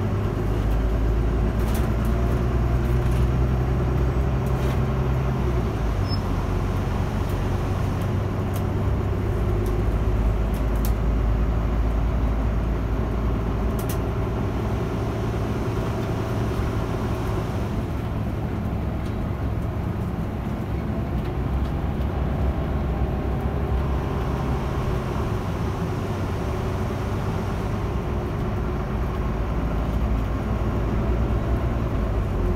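A Volvo bus's engine and road noise heard from inside the cabin, running steadily as the bus drives along. The engine note shifts a few times, about five seconds in and again around eighteen seconds.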